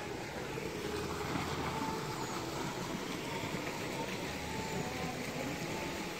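Steady outdoor background noise with no distinct event, at a moderate level, with a few faint held tones in it.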